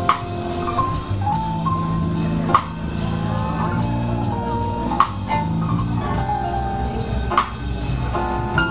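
Live blues band playing a slow song: drum kit with strong hits about every two and a half seconds under held electric guitar and keyboard notes.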